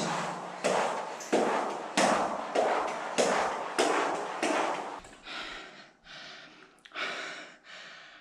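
A man panting hard from exertion, quick loud breaths about every half second that weaken after about five seconds.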